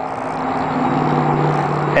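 A motor vehicle's engine running steadily with a low hum, growing slowly louder.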